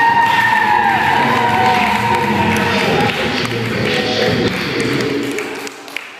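Hip-hop dance track playing loudly. It drops away abruptly near the end with a brief click.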